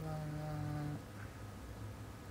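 A woman's voice humming one low, wordless note for about a second, dipping slightly at the start and then held steady before stopping.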